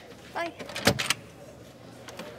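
A door with a metal push bar being pushed open: a sharp clack and a couple of knocks about a second in, after a short voiced sound.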